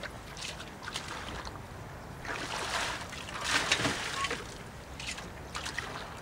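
Hand strokes of a small boat through calm water: a splashing swish rises and falls about every one and a half to two seconds, with a few small knocks in between.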